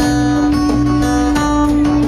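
Live band music led by guitar, with a steady held note under chords that change every half second or so and a repeating bass line.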